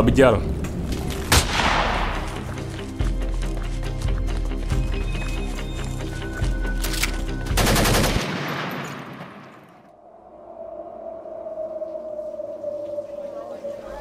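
Automatic rifle fire, a dense rattle of repeated shots with deep low rumbling booms, fading away about nine seconds in. A single steady held tone follows to the end.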